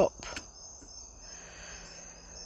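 Faint steady high chirring of crickets under quiet background hiss, with a couple of faint clicks just after the start.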